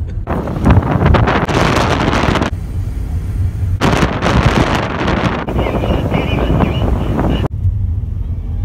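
Wind rushing over a phone microphone from a moving car, in two long loud stretches, over the car's steady low road and engine rumble. About three-quarters of the way through it changes abruptly to a steady low engine hum.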